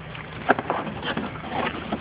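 A cardboard box being handled and its lid fitted on: a run of knocks and scrapes, the loudest a sharp knock about half a second in.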